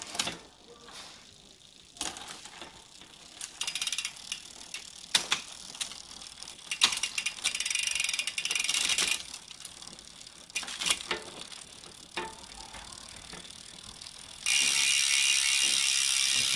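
Rear freehub pawls of a Windspeed WSR 701 mountain bike clicking as the crank and rear wheel are spun by hand on a stand, with the chain running through the Shimano Deore drivetrain in spells; the drivetrain turns light and smooth. Near the end the wheel coasts fast into a louder, steady freewheel buzz.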